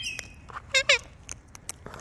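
Sulphur-crested cockatoo giving a short, soft wavering call about a second in, among scattered sharp clicks.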